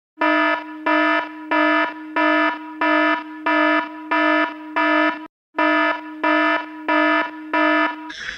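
An electronic alarm buzzer sounding in a steady repeating pattern of harsh buzzing blasts, about one and a half a second, about a dozen in all, with a short break a little after five seconds in.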